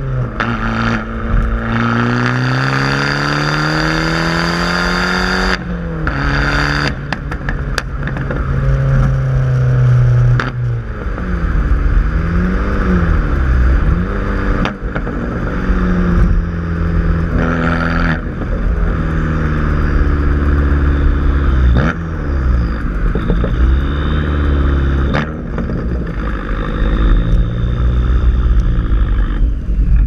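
Abarth Punto Supersport's 1.4-litre turbocharged four-cylinder engine through a Supersprint racing exhaust, pulling hard through the gears. The revs climb steadily, break off briefly at an upshift about five and a half seconds in, climb again until about ten seconds in, then rise and fall repeatedly.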